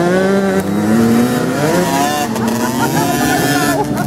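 Small youth motocross bike engines revving as the riders pass close by. The pitch climbs slowly over the first couple of seconds, then wavers up and down with the throttle.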